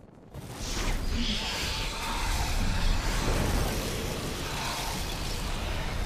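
Film sound effect: a loud rushing roar with a deep rumble, swelling in suddenly within the first second and then holding steady.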